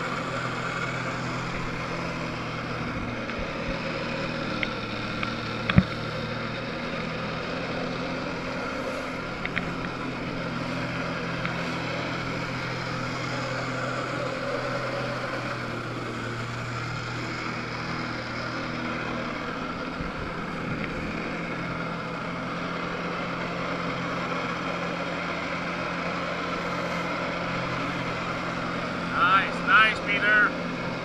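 Jet ski engine running steadily under load, pumping water up the hose to a flyboard, over a steady rush of water; its pitch shifts a little about halfway through.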